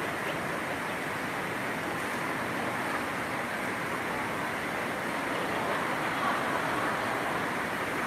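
A steady rushing background noise without any clear pitch, growing slightly louder in the second half.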